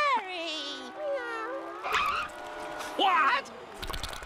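A cartoon snail's cat-like meows: several short calls that rise and fall in pitch, the last about three seconds in. A wavering voice is mixed in early on.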